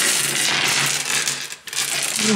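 Polished tumbled stones clattering and clicking against one another on a wooden tabletop as a hand rakes through the pile: a dense run of clicks for about a second and a half, then a shorter burst near the end.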